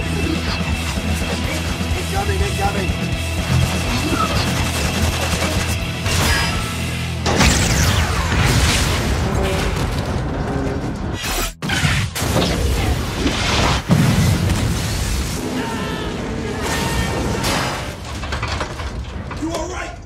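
Action-film soundtrack mix: steady score music, then loud booms and crashes of battle effects from about seven seconds in, with a brief sudden dropout a little past the middle.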